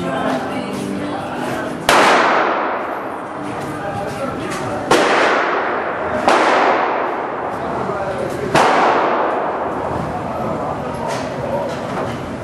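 Small-calibre gunshots on an indoor shooting range: four loud shots about 2, 5, 6 and 8.5 seconds in, and quieter ones near the end. Each shot rings out in a long echo off the hall, over a murmur of voices.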